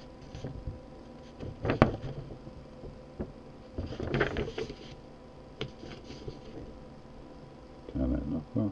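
Faint handling noises, a few soft clicks and rustles with the longest about halfway through, over a steady low electrical hum of a few tones, picked up by a USB document camera's built-in microphone.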